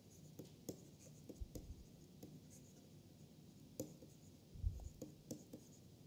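Faint tapping and scratching of a stylus writing on a tablet screen, small irregular clicks as the letters are formed, with a few soft low thumps.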